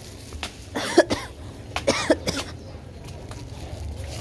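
A person coughing twice, a short sharp burst about a second in and another about a second later.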